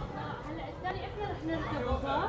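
Indistinct speech: people chatting.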